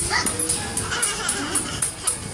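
A toddler squealing and shouting excitedly, short high yelps, over background music with a quick, regular beat.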